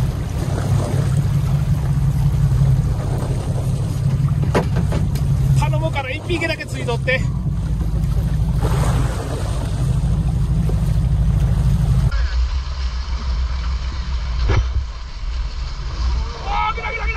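A fishing boat's motor running with a steady low hum as it moves at trolling speed, with wind and sea noise. A voice calls out briefly about six seconds in. About twelve seconds in, the hum turns lower and duller.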